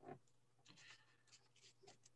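Near silence on an open call microphone, with a few faint brief rustles.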